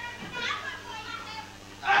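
Small studio audience chattering and calling out over a low steady hum, quieter than the commentary around it; the announcer's voice comes back in near the end.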